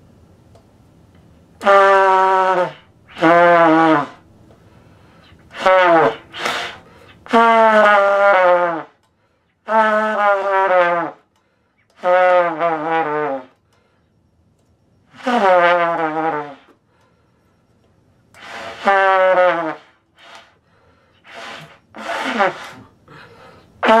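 Trumpet playing about ten short separate notes and phrases with pauses between them, many of them sliding down in pitch at the end.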